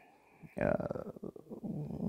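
A short silence, then a man's low, creaky hesitation sound in the throat, a drawn-out "uh" as he searches for his next word.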